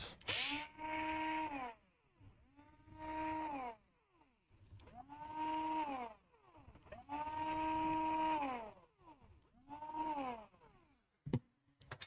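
Small cordless electric screwdriver running in five short bursts, each winding up to a steady whine and winding back down, as it backs out the screws holding a laptop's heatsink. A single light click near the end.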